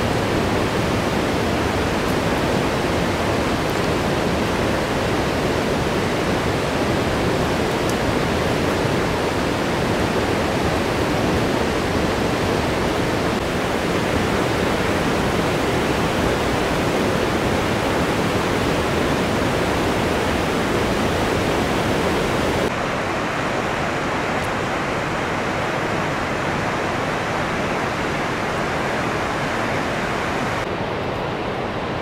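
Steady rushing of river water, a loud, even noise without a break. About three-quarters of the way through it becomes slightly quieter and duller.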